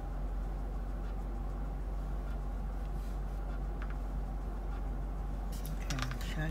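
Steady low hum inside a car cabin, with a few faint clicks of small objects being handled.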